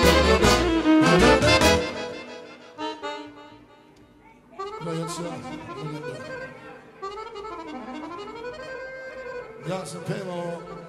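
A live Balkan folk party band plays loudly with drums for about two seconds, then breaks off. After a short lull, a quieter solo accordion-style melody with bending, sliding notes plays on its own.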